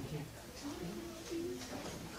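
Low, indistinct murmur of students talking quietly among themselves, with no single clear speaker.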